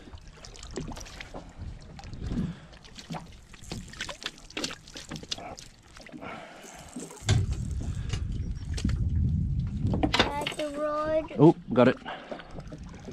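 Scattered clicks and knocks of a landing net with a squid in it being handled at a boat's side. About seven seconds in, a low rumble sets in for a few seconds, and a voice calls out briefly near the end.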